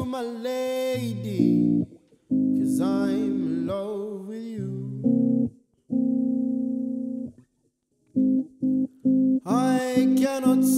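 Electric guitar playing held, ringing chords while a man sings wordless vocal runs over the first few seconds. The guitar stops briefly about two thirds of the way through, then comes back with short, clipped chords, and the voice returns at the end.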